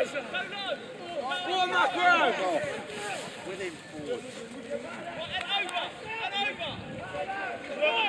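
Several voices shouting and calling over one another, from rugby players and touchline spectators. The shouts come in clusters, loudest about two seconds in and again at the end.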